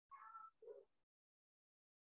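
Near silence, with a faint, brief pitched sound in the first half-second and a second faint low note just after it, then dead silence.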